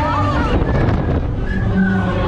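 Wind buffeting the microphone in the gondola of a KMG Konga giant pendulum swing ride as it sweeps through its arc, a heavy, steady rumble. Riders' voices and shouts rise briefly over it in the first half second and again near the end.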